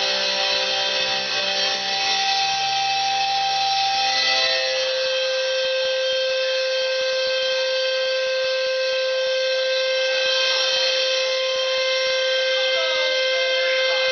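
Amplified electric guitars letting a chord ring out with no drums, the way a live rock song ends. The lower notes fade away about five seconds in, leaving one steady held tone that rings on.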